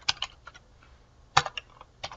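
Computer keyboard being typed in short bursts of keystrokes: a quick run at the start and a louder group of three or four keys about a second and a half in.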